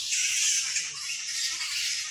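A dense, high-pitched wildlife chorus from the forest canopy, a steady shrill haze with some pulsing.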